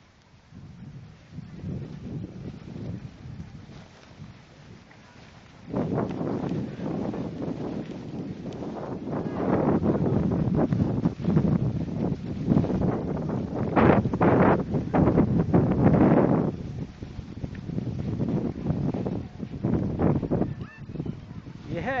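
Skis sliding and scraping over packed snow on a descent, mixed with wind buffeting the microphone. It is fairly quiet at first, turns much louder about six seconds in, and is loudest through the middle.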